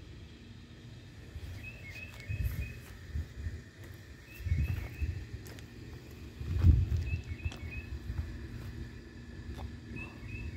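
A songbird outdoors repeats a short phrase of quick high chirps every two to three seconds. Low rumbles on the microphone come and go underneath, loudest a little before seven seconds in.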